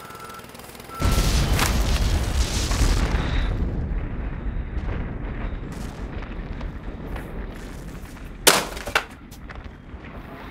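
Vehicle reversing beeps, then about a second in a sudden explosive boom followed by a long, deep rumble that fades over several seconds: a building demolition blast and collapse. A brief sharp sound comes near the end.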